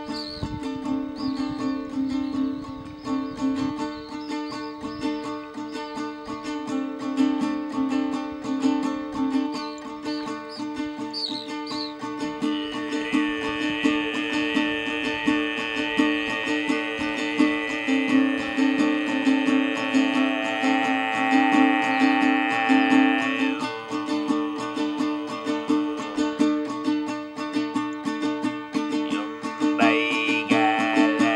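A small ukulele-sized string instrument strummed over a steady throat-sung drone. From about twelve seconds in to about twenty-three seconds, a high overtone melody rings above the drone.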